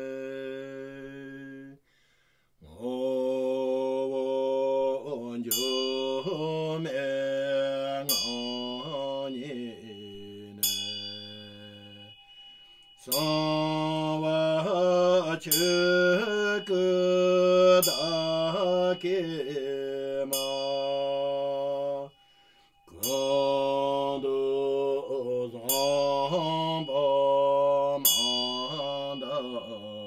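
A man's voice chanting a Tibetan Buddhist liturgy as a slow melody in long held notes, pausing briefly for breath twice. A small hand bell is struck every few seconds and rings on over the chant.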